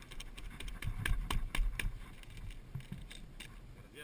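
Rapid clicks, knocks and rustles of a motocross glove brushing and bumping close to a helmet camera's microphone. They are thickest in the first two seconds, then fade to a faint rustle.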